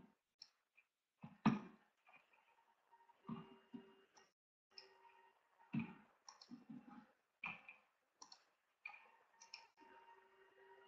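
Faint, irregular clicks and light knocks of a computer mouse and keyboard being used, picked up by a sensitive desk microphone, over a faint steady hum. The strongest clicks come about one and a half, three and a half, six and seven and a half seconds in.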